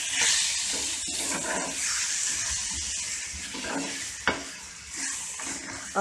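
Kidney beans and masala sizzling in a frying pan while a spatula stirs them through, with one sharp knock of the spatula against the pan a little after four seconds.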